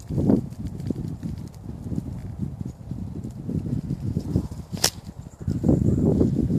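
Wind buffeting the phone's microphone in an uneven, gusty rumble, mixed with handling noise, growing louder near the end. A single sharp click comes just before the five-second mark.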